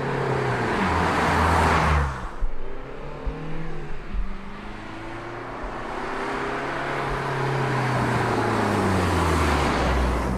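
A car drives past twice. Each time the engine and tyre noise swell to a peak and the engine note drops in pitch as it goes by: once about two seconds in, and again near the end. A few brief thumps sit between the two passes.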